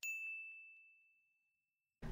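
A single ding sound effect for an on-screen title card: one strike, then a clear high tone that fades over about a second.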